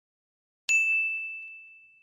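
A single bright notification ding, the bell sound effect of a subscribe-button animation. It strikes about two-thirds of a second in on one clear tone and rings out, fading over about a second and a half.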